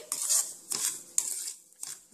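A spatula scraping and stirring semolina and shredded coconut as they roast in ghee in a pan. There are about four short scraping strokes, roughly one every half second.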